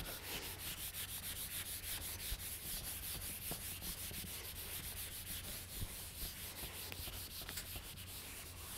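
Whiteboard eraser rubbing across a whiteboard in quick, even back-and-forth strokes: a soft, steady scrubbing as the board is wiped clean.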